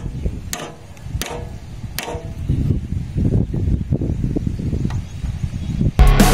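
Rusty roller chain and sprockets in a hand tractor's chain case clinking as they are handled: three sharp metallic clicks in the first two seconds, then a stretch of low, uneven knocking and rumbling. The chain is dry and rusted from running without gear oil.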